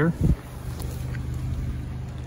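Mazda3's engine idling steadily, an even low hum.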